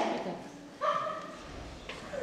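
A single short call in a child's voice about a second in, pitched and falling slightly.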